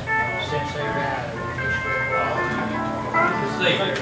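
Live country jam band of acoustic, electric and pedal steel guitars playing, with notes held for a second or so at a time and a lower note coming in about halfway through.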